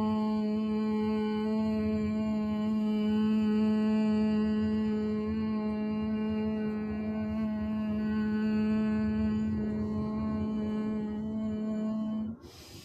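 A woman humming one long, steady note on a single out-breath: bhramari, the humming bee breath of yoga pranayama.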